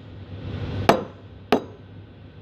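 A ceramic latte cup being set down on a wooden counter: two sharp knocks about two-thirds of a second apart, over a low steady hum.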